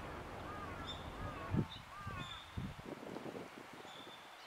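Small birds chirping in short, repeated arching calls, over a low rumble that dies away about three seconds in. A single thump about one and a half seconds in is the loudest sound.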